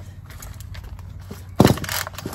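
One pull on the recoil starter of an Echo CS400 two-stroke chainsaw, set on choke for a cold first start: a short, loud whir of the engine being spun over, about one and a half seconds in, after a stretch of quiet shop sound.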